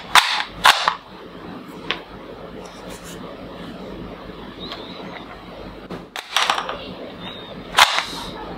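Toy foam-dart rifle being loaded and fired, with sharp plastic clacks of its spring mechanism: two near the start and a cluster in the last two seconds.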